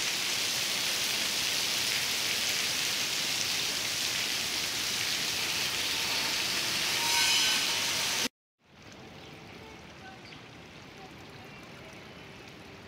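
Heavy rain falling on a pool terrace: a loud, steady hiss that stops suddenly at a cut about eight seconds in, followed by a much quieter outdoor hiss.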